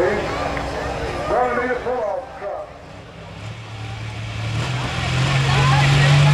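Pulling tractor's diesel engine running at a steady low note that comes in about halfway, steps up slightly in pitch and grows louder. Before it, a man's voice over the public address.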